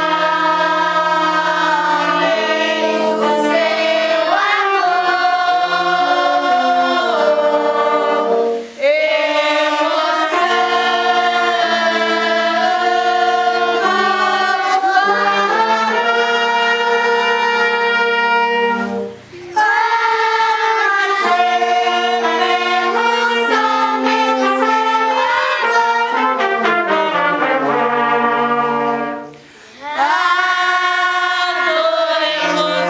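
Girls and women singing a Christmas shepherds' song together, accompanied by a small brass band of trumpets, trombones and tuba playing sustained chords and a bass line. The music comes in long phrases with short breaks about nine seconds in, about nineteen seconds in, and near the end.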